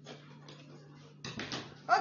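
Dressmaking scissors snipping through cotton wax-print fabric, with a louder stretch of cutting and fabric handling in the second half, over a steady low hum.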